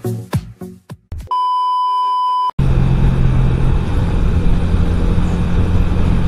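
A dance-music beat ends about a second in. It is followed by a steady electronic beep about a second long. Then comes the sound of riding a Yamaha Vega R, a small single-cylinder four-stroke motorcycle: the engine runs steadily under heavy wind and road noise.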